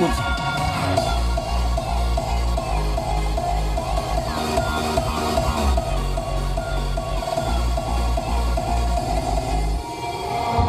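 Electronic dance music played loud on a car stereo, with a Ground Zero GZHW 30X 12-inch subwoofer pushing a deep bass beat about twice a second, heard inside the car's cabin.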